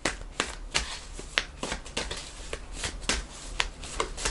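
A deck of angel oracle cards being shuffled by hand: irregular crisp clicks as the cards slide and tap together, several a second.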